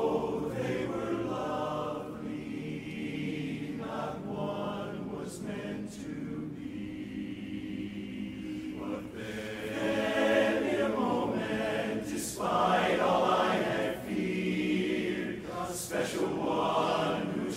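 Men's barbershop chorus singing a cappella in close four-part harmony, holding long chords that swell louder about ten seconds in.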